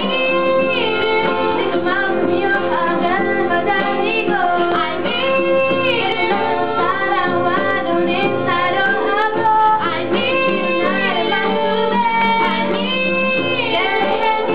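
Female voices singing a pop ballad cover in Korean with guitar accompaniment.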